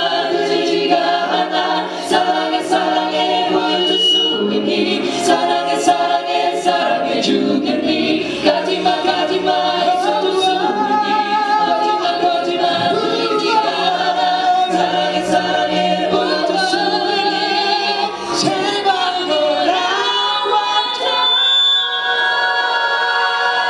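A vocal group of male and female singers singing together in harmony through stage microphones, a cappella in style.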